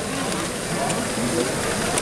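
Hall chatter of many overlapping voices over the running mechanisms of a LEGO Great Ball Contraption: plastic Technic modules whirring, with a few light clicks of small plastic balls.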